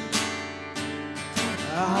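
Live worship band playing in a gap between sung lines, led by strummed acoustic guitar; the singers come back in near the end.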